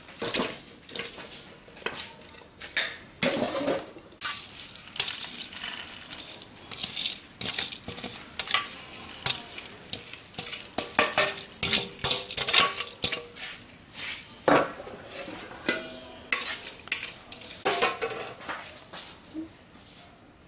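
Stainless steel tongs clattering and scraping against a stainless steel colander in quick, irregular knocks, with a few short metallic rings, as fried garlic is scraped out onto a plate.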